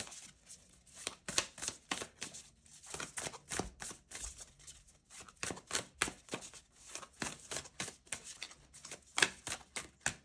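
Funko Nightmare Before Christmas tarot cards being shuffled by hand: a quick, irregular run of quiet card flicks and taps, several a second, with a sharper one near the end.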